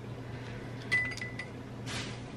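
A few small clicks with a short high beep about a second in, over a low steady hum: handling the battery-dead handheld milk frother.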